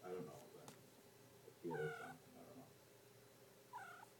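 Domestic cat meowing: a loud meow about two seconds in, then a short, rising meow near the end.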